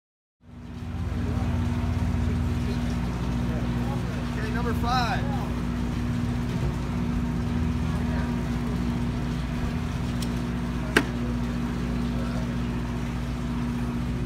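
Large charter boat's engines idling at the dock: a steady low drone with a constant hum, unchanging throughout. A single sharp click sounds near eleven seconds in.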